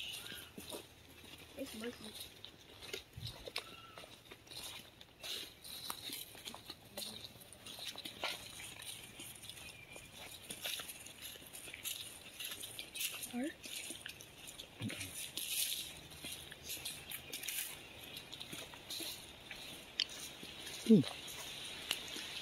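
Footsteps on dry leaf and palm-frond litter along a woodland trail: an irregular run of quiet crackles and rustles as people walk.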